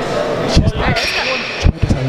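Loud, heavy breathing blown straight into the microphone. It gives low thumping gusts of wind noise, two about half a second in and a quick run of them near the end.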